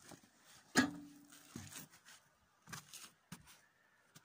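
Scattered knocks and scrapes of a person climbing up onto a trailer carrying an excavator. The loudest is a sharp metallic knock about a second in that rings briefly.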